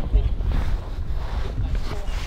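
Wind buffeting the camera microphone: an uneven low rumble with a haze of noise above it.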